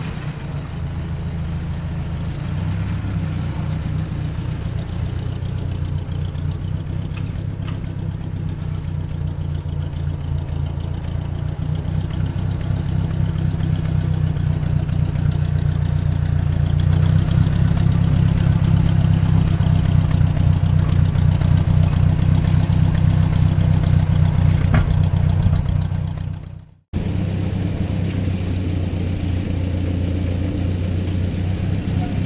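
Ford 640 tractor's four-cylinder engine running at a steady idle, its note growing louder about halfway through. Near the end the sound drops out abruptly for an instant, then the engine carries on.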